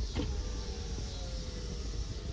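Low, steady vehicle rumble heard from inside a car, with a faint thin tone drifting slowly in pitch.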